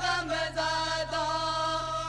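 Unaccompanied devotional singing of an Urdu naat, with long held notes that bend slightly in pitch. A steady low hum from an old cassette recording runs underneath.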